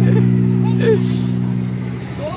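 An electronic keyboard holds a low sustained chord that slowly fades, with a few brief voices calling over it.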